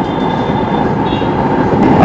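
Steady roar of a commercial gas burner running under a steel frying pan.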